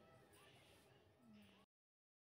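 Near silence: very faint background sound that cuts off to dead silence about one and a half seconds in.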